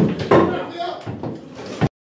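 Police officers shouting as they crowd through an apartment doorway, mixed with several sharp knocks and thuds of the door and bodies. The sound cuts off abruptly near the end.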